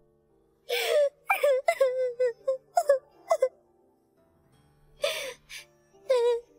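Young girl sobbing: a gasping breath about a second in, then a run of short wailing cries, a pause, and another gasping sob near the end, over soft background music.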